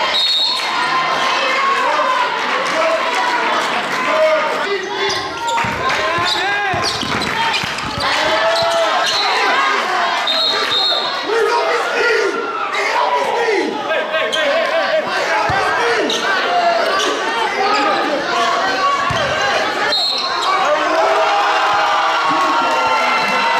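Live basketball game sound in a gym: the ball bouncing on the hardwood court and a few short high squeaks from shoes, under overlapping shouts and chatter from players and spectators, all echoing in the hall.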